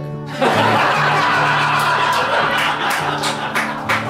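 A room full of people laughing together at a joke, the laughter swelling up about half a second in and running on. Background music plays softly underneath.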